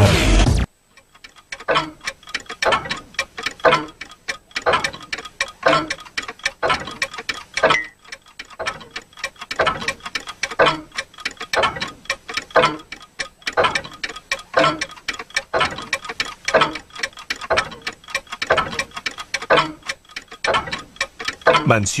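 Clocks ticking steadily, one short even tick after another, after loud music cuts off abruptly less than a second in.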